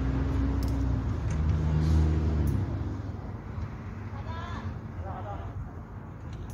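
A low, steady engine hum, like a vehicle running nearby, that drops away about two and a half seconds in. Faint distant voices are heard under and after it.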